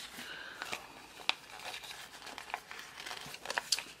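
Sheets of planner stickers rustling and crinkling as they are handled and shuffled, with a few sharp paper crackles and ticks scattered through.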